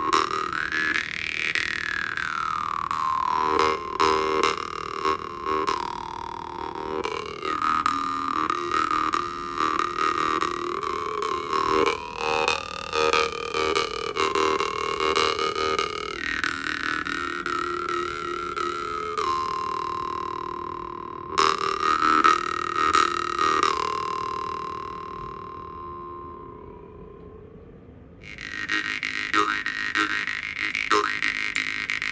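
Masko jaw harp (vargan), a metal Russian jaw harp tuned to G, being plucked and played: a steady buzzing drone with a melodic overtone line that glides up and down as the player's mouth shape changes. It is plucked rhythmically at first, is left to ring and fade away after about three quarters of the way through, and a new plucked phrase starts near the end.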